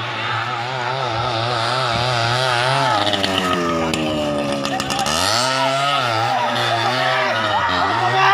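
Motorcycle engine running at high revs, its pitch wavering rapidly with the throttle. The pitch sinks about three seconds in and climbs again about two seconds later as it speeds up.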